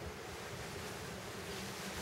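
Faint, steady background hiss in a pause between words, with no distinct sound standing out.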